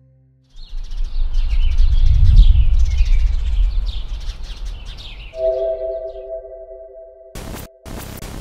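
Sound-designed logo sting: a sudden deep rumbling whoosh with bird-like chirps above it, swelling and fading over several seconds, then a held three-note synth chord, cut by a few short bursts of glitchy static near the end.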